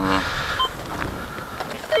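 Metal detector giving two short beeps, one a little after half a second and one near the end, over a steady outdoor hiss.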